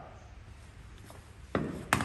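Quiet workshop room tone, then a knock about one and a half seconds in and a sharp click just before the end, from an angle grinder and its power cord being handled and set down on a concrete floor.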